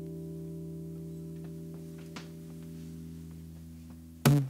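The last chord of a cutaway acoustic guitar ringing out and slowly fading, with a few faint clicks in the middle.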